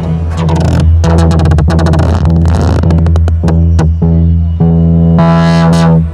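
Moog Sub 37 analog synthesizer sounding a loud held bass note, with repeating short pulses that speed up midway as the knobs are turned: its envelopes looping as a cyclical modulation source.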